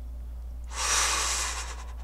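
A man's breathy exhale, an exasperated sigh lasting about a second, over a steady low electrical hum.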